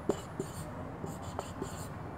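Marker pen writing on a whiteboard: short, scratchy, squeaky strokes, with a few light taps of the pen tip.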